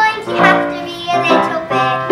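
A young girl singing a show tune, with instrumental accompaniment.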